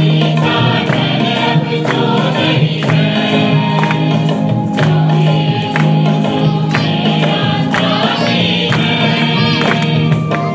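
Hindi Christian praise and worship song: voices singing over steady instrumental backing with regular percussion strokes.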